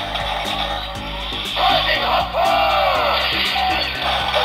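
Kamen Rider Zero-One candy-toy Shotriser gun playing its electronic sound effects with a loaded Progrise Key: sweeping sci-fi tones and a louder burst of effects about one and a half seconds in, over music with a steady beat.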